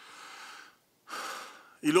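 A man's breaths taken close to the microphone in a pause between sentences: a soft breath, then a louder, sharper intake of breath about a second in, just before he speaks again.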